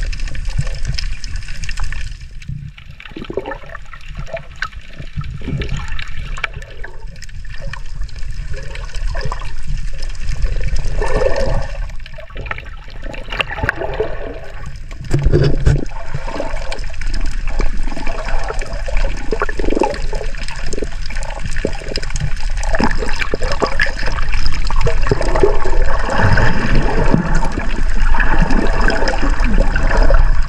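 Water rushing, sloshing and gurgling around an underwater camera as it moves, a muffled irregular churn with bubbling, growing louder about halfway through.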